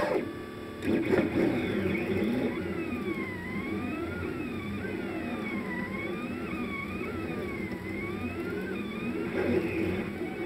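Stepper motors of a Rostock delta 3D printer driving the arms as a pen plots holes and perimeters at 50 mm/s: whining tones that glide up and down in pitch over and over as the motors speed up and slow down through each curve. A person laughs near the start.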